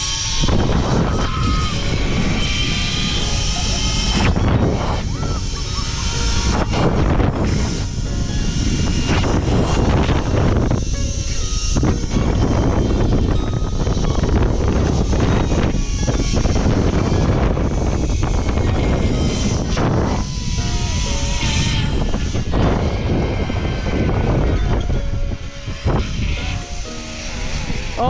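Wind buffeting the microphone of a camera riding down a zip line, with the trolley running along the cable, a loud steady rush that lasts the whole ride.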